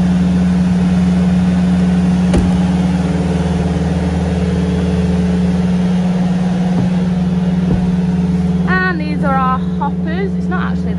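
Milking parlour's milk pump running: a loud, steady motor hum with a low drone beneath it. A short pitched call comes in near the end.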